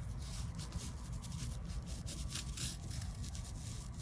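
A Chinese painting brush rubbing and scratching across paper in many short, quick strokes as the tree trunk is painted. A low, steady hum runs underneath.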